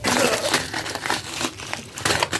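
Plastic bags of rice crinkling and rustling as they are grabbed and handled, with quick, irregular crackles.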